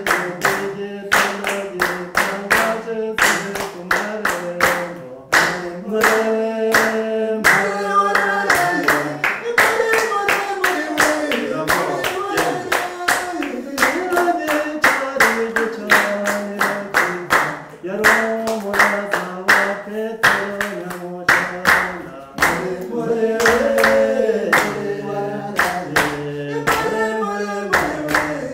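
A group of children singing a Rwandan traditional dance song (imbyino nyarwanda) in unison, with steady rhythmic hand clapping keeping the beat for a dancer.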